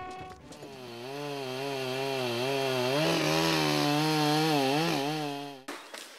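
Chainsaw running, its pitch wavering up and down as it works, then cutting off suddenly near the end.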